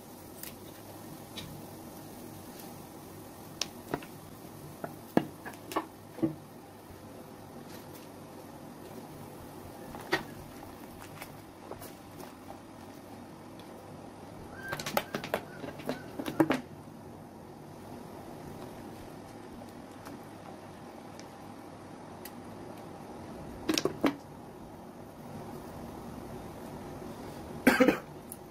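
Pot of tomato and lemongrass broth heating on the stove under a steady low background, broken by scattered clicks and knocks of chopsticks against the metal pot. A quick cluster of knocks comes about halfway through as the broth is stirred, and another short one comes near the end.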